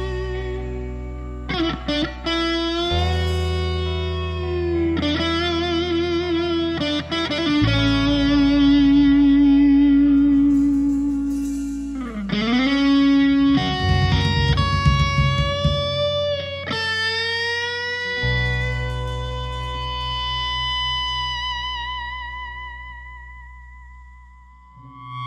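Instrumental rock urbano passage: a lead electric guitar plays long held notes with vibrato and bends over sustained bass notes that change every few seconds. It fades out near the end.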